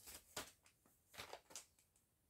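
Faint rustling of plastic-packaged cross-stitch kits being handled in a plastic storage box: a few short soft rustles, one shortly after the start and a couple more past the middle.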